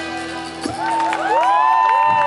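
A reggae band's last held note dies away, and from under a second in a crowd cheers, with long overlapping whoops that rise and fall.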